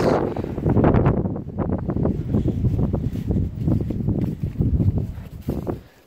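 Wind buffeting the microphone in irregular gusts, a heavy low rumble that swells and drops, easing off near the end.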